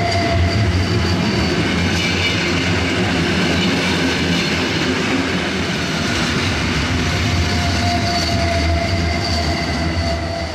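Flåm Railway passenger carriages rolling past close by, their steel wheels running on the rails with a loud, steady rumble. A thin squealing tone from the wheels comes back in near the end.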